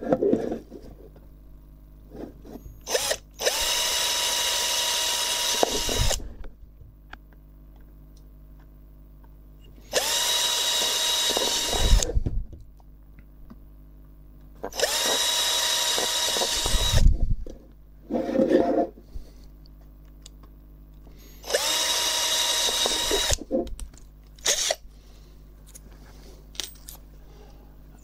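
Power drill boring pilot holes through a black plastic project enclosure: four separate bursts of about two seconds each, the motor whine climbing at the start of each. Small knocks between the bursts as the box is handled.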